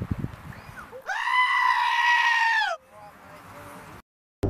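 Black-faced sheep giving one long, loud bleat about a second in, lasting almost two seconds and falling in pitch as it ends.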